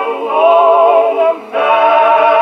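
Vocal quartet on a 1927 Edison Diamond Disc played on an Edison cabinet phonograph, holding sustained chords with vibrato. A short break about one and a half seconds in is followed by a new held chord with lower voices.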